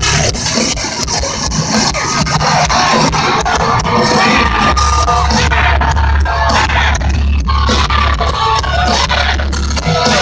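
Loud live industrial metal band playing through a large hall PA, with vocals over distorted guitars and drums, heard from within the audience. A heavy bass low end comes in about halfway through.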